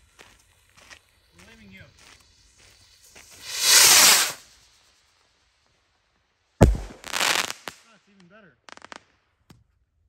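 A rocket firework takes off with a loud whoosh that swells and fades over about a second, roughly three and a half seconds in, then bursts overhead with a sharp bang about three seconds later, followed by a short hiss.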